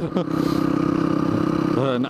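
Motorcycle engine running at a steady cruising speed, its note holding one pitch, heard from on the moving bike with wind noise over it.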